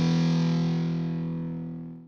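Final chord of a heavy metal track on distorted electric guitar, held and slowly fading out.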